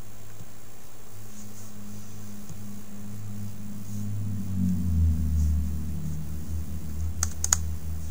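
Computer mouse clicks, a quick group of three near the end as a folder is opened in a file dialog, over a steady low hum that swells about halfway through.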